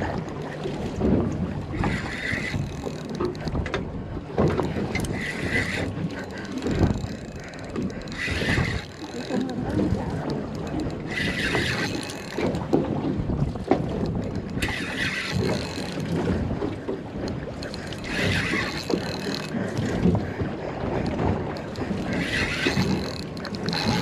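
Spinning reel worked while fighting a strongly pulling fish: short bursts of reel noise about every three seconds, over steady wind rumble on the microphone.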